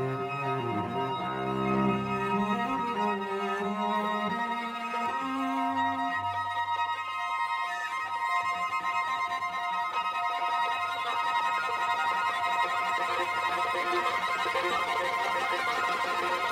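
String quartet playing. Moving lower lines in the first few seconds give way to long-held high notes.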